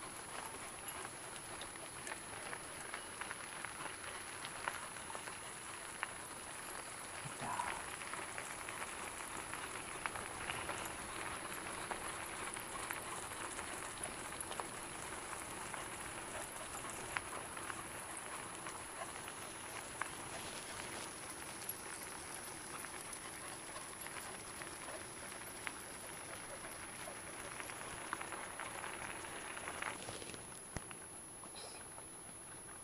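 Wheels of a dog-drawn rig rolling over a gravel trail: a steady crackling patter with scattered small clicks throughout.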